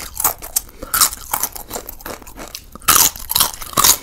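Close-miked bites and chewing on a spicy curried chicken leg piece: a run of sharp, crunchy bites with wet chewing between them, the loudest at the start and again about three seconds in.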